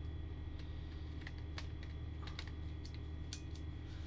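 A few scattered light clicks and taps from handling a Fujifilm X-S10 camera body while a 15-45mm zoom lens is fitted to its mount, over a steady low hum.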